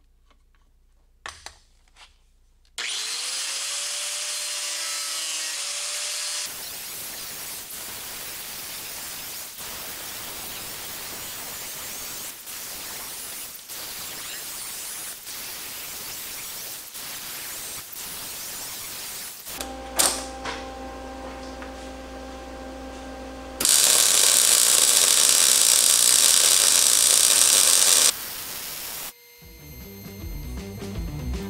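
Angle grinder spinning up with a rising whine and grinding on the steel frame joint for a few seconds. Then comes a long steady crackling hiss of arc welding along the frame seam, broken by a humming pause, and a louder stretch of welding for about four seconds near the end.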